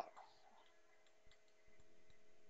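Near silence: faint room tone with a low steady hum and a few faint ticks.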